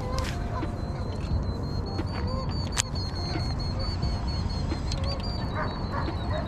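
Faint waterfowl calls, goose- and duck-like honks, over a steady low wind rumble on the microphone, with a thin high steady tone from about a second in and two sharp clicks from handling the rod and line.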